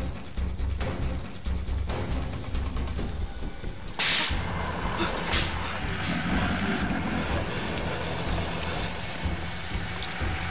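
Tense film score with a pulsing low bass. A loud crash about four seconds in and a second, sharper hit about a second later.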